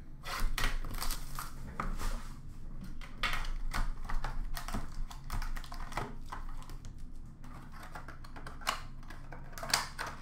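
Hands unwrapping and opening a sealed trading card box: crinkling plastic wrap and quick clicks and taps of cardboard. The sound is busiest in the first several seconds and thins out later.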